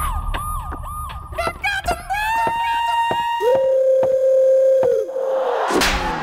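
Police siren sound, starting as a quick run of falling whoops over a low rumble, then rising wails that level off into held notes. The last and loudest is a long steady low note that drops away about five seconds in. A sudden crash-like burst comes near the end.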